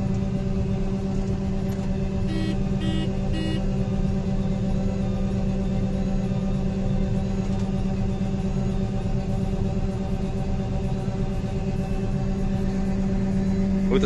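John Deere 9760 STS combine running while unloading shelled corn through its unloading auger, heard from inside the cab: a steady drone with a strong even hum. Three short beeps come about two and a half to three and a half seconds in.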